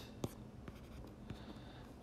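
A stylus writing on a tablet's screen: faint scratching strokes with a few light taps as an equation is handwritten.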